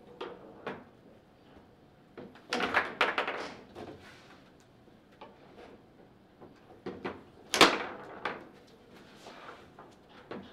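Table football (foosball) play: sharp knocks and clacks of the ball being struck by the rod figures and hitting the table walls. A quick run of knocks comes about three seconds in, and the loudest single knock about seven and a half seconds in.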